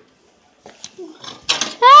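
A moment of near silence, then a few faint knocks and clicks of plates being handled in a kitchen cupboard. Near the end comes a loud, high-pitched cry of "Ah!".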